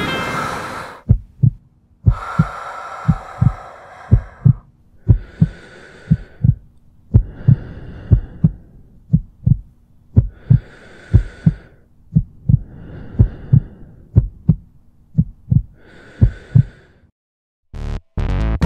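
Heartbeat sound effect: short low thumps, mostly in pairs, about once a second, with airy swells rising and falling between them. Music fades out just before it begins, and it stops shortly before the end.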